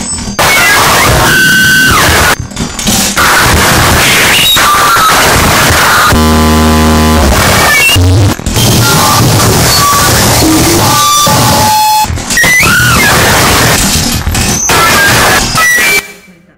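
Harsh noise music: a loud, dense wall of distorted electronic noise, broken by short dropouts, with whining tones that bend in pitch and a low buzzing drone about six seconds in. It cuts off suddenly at the end.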